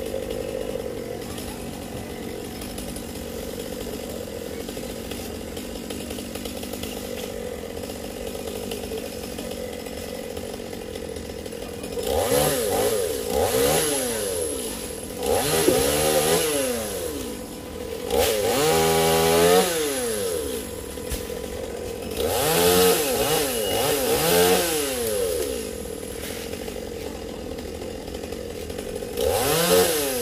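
Two-stroke chainsaw idling steadily, then revved hard in several bursts from about halfway through, its pitch climbing and falling with each one.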